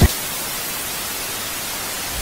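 Television static: a steady, even hiss of white noise, opening with a brief low thump.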